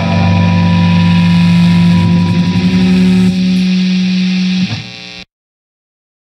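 Shoegaze rock song ending on distorted electric guitars holding a loud sustained chord. Part of the chord drops away a little past three seconds, and the sound cuts off suddenly a little after five seconds into silence.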